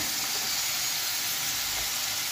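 Potato fries deep-frying in hot oil in a pan, a steady sizzle as they are left to brown further.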